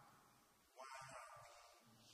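A man's faint voice: one short, drawn-out vocal sound of about a second, starting just before the middle.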